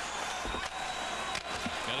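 Ice hockey arena sound: a steady crowd hum with two sharp knocks of a stick on the puck or the puck on the boards, about half a second and a second and a half in.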